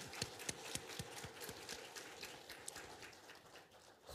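Applause: many hands clapping, the separate claps distinct, thinning out and fading away toward the end.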